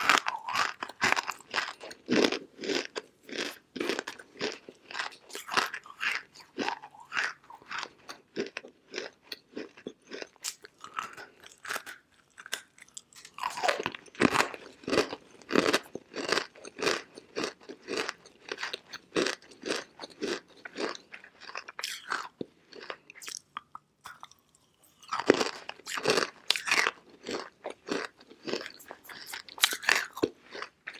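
Biting and chewing dry chunks of edible clay: a dense run of crisp crunches, with brief lulls about twelve seconds in and again around twenty-four seconds.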